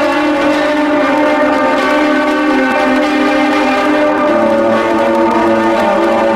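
Clean-toned electric guitar playing a lo-fi improvisation: sustained chords ring on and change pitch twice, about two and a half and four seconds in.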